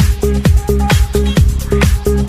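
Classic house dance track playing, with a four-on-the-floor kick drum about twice a second under a steady bassline and ticking hi-hats.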